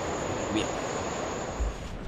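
Steady wash of surf with a continuous high-pitched insect drone over it, both stopping abruptly near the end.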